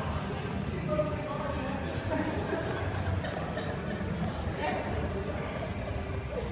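Indistinct chatter of a group of people talking in a large gym hall, with a couple of faint knocks about two and four seconds in.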